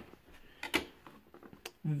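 A few light clicks and taps of handled plastic: the bidet's remote control and its wall caddy being moved about in a gloved hand, with a couple of sharper clicks a little past half a second in and again near the end.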